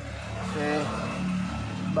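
A steady low engine-like hum runs throughout, with one short spoken word heard under it.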